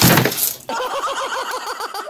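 A loud, brief clattering crash in the first half second as a startled cat leaps away from a printer, followed by a person's rapid, high-pitched laughter in quick repeated bursts.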